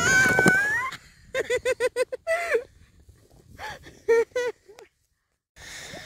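A baby's high, gliding squeal fades out about a second in. Then come two bursts of rapid laughter, short pitched pulses a few per second.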